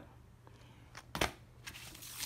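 Vinyl records being handled in a plastic crate: a single sharp knock about a second in, then the brief rustle of a 12-inch record sleeve sliding against others near the end.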